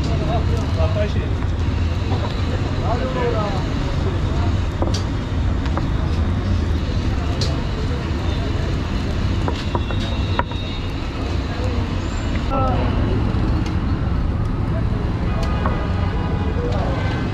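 Busy street ambience: a steady rumble of road traffic, with indistinct voices of people around and a few sharp clicks and knocks.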